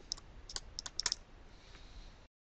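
Stylus clicking and tapping on a pen tablet as a word is handwritten: a quick, irregular run of light clicks, mostly in the first second or so, then faint hiss.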